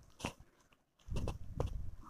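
A steel spoon stirring a thick, sticky batter in an aluminium kadhai. There is one click, a short pause, then about a second of low scraping and squelching with several light clicks of the spoon against the pan.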